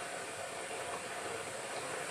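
Steady background hiss, even and unchanging, with no other sound over it.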